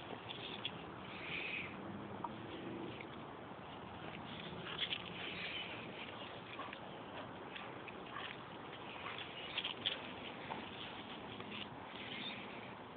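Dogs' paws scuffling and trampling dry grass and leaves as they tussle over a rope toy: a steady rustling with scattered short crackles, sharpest twice, midway and near the end.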